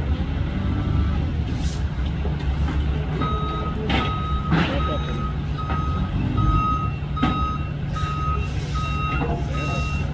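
Diesel engines of a garbage truck and a wheel loader running, with a reversing alarm that starts beeping steadily about three seconds in, a little under two beeps a second, and a second, higher-pitched reversing alarm joining near the end. Two sharp crashes about four seconds in, as debris drops from the loader's grapple bucket into the truck's rear hopper.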